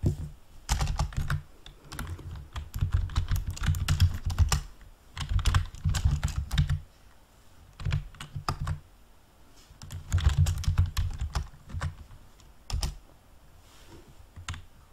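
Typing on a yellow large-print computer keyboard: bursts of rapid keystrokes, each click with a dull thud beneath, about six bursts broken by short pauses.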